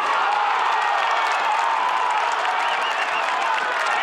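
Football stadium crowd cheering and shouting at a shot on goal. The noise jumps up suddenly at the start and stays loud and steady, with voices shouting through it.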